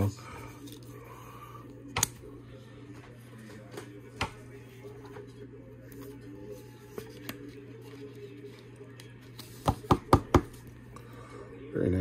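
Plastic card sleeve handled as a trading card is slid into it: soft rustling with scattered sharp clicks, and a quick run of louder clicks about ten seconds in, over a low steady hum.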